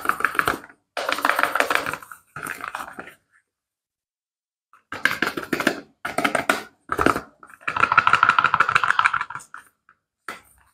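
A shrink-wrapped cardboard soap box being turned and rubbed in nitrile-gloved hands: about seven bursts of rustling and crinkling, with a pause of nearly two seconds in the middle.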